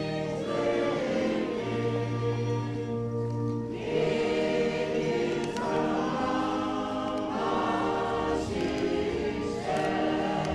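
Slow hymn sung by a choir in long held chords, the chords changing every second or two.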